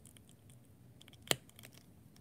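Small plastic toy helmet being pressed onto an action figure's head: faint plastic handling ticks, then one sharp click a little over a second in as it snaps into place.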